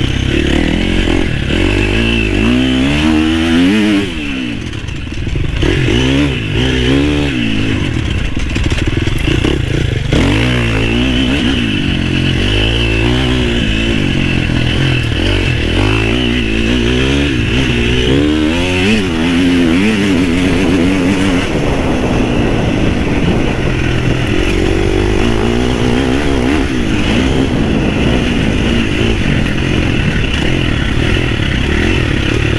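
Husqvarna FC350 four-stroke single-cylinder dirt bike engine under way, its pitch rising and falling over and over as the throttle is worked, with a brief drop in loudness about four seconds in as the throttle is rolled off.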